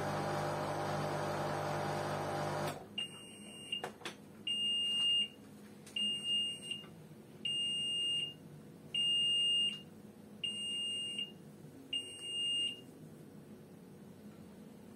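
LG Intellowasher 5 kg front-loading washing machine at the end of its cycle: its steady running hum stops about three seconds in, a couple of clicks follow, then six beeps about a second and a half apart signal that the wash is done.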